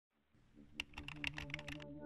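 Typing sound effect: about ten quick key clicks in the space of a second, over a low held synthesizer drone that fades in.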